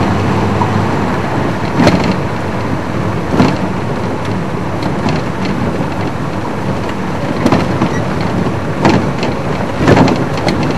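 Game-drive vehicle driving along a dirt road: steady engine and road rumble, with a few sharp knocks.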